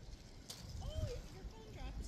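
A man muttering a few words over a low rumble, with one sharp click about a quarter of the way in.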